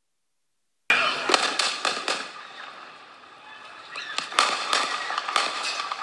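Several sharp gunshot cracks in quick succession from a handheld phone recording, starting suddenly about a second in, then a lull with noise, and more sharp cracks about four and a half seconds in.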